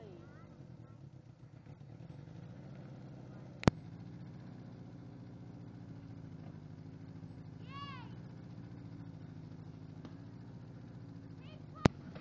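SUV engine running slowly at low revs, a steady low hum, as it tows a small aluminium boat across grass. Two sharp clicks cut through, one about a third of the way in and one at the end.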